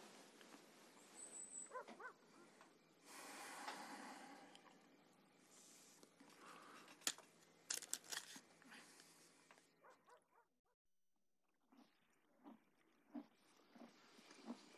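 Near silence: faint rustling with a few soft clicks and light thumps.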